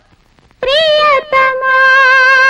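Female singer vocalising a wordless melody in a Telugu film song. After a brief pause she sings a bending note, breaks off for a moment, then holds one long steady note.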